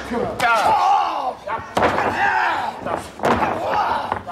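Three sharp impacts of wrestlers' bodies and feet hitting in a wrestling ring, spread over a few seconds, with a voice talking over them.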